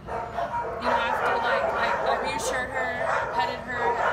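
Dogs barking and yipping in the background, mixed with indistinct voices.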